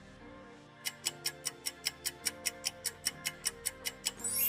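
Countdown timer ticking sound effect: a rapid, even run of ticks at about five a second, starting about a second in, over quiet background music.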